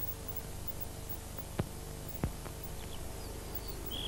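Steady low hum and hiss of an old recording between two adverts, with two faint clicks in the middle. Faint bird chirps begin near the end.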